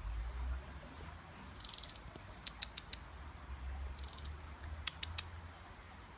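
European robin calling: short, high, rapid chattering phrases about two seconds apart, and two sets of three sharp tic notes. A low rumble on the microphone is loudest near the start.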